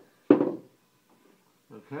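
A small plastic bottle of acrylic paint set down on a wooden tabletop with a single knock, dying away quickly.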